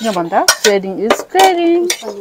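Metal forks clinking and scraping against ceramic plates while eating noodles, with a few sharp clinks among short pitched sounds.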